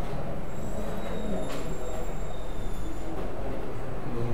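A thin, high-pitched squeal starts about half a second in and fades out near the three-second mark, with one faint tap in the middle, over a steady low rumble of room noise.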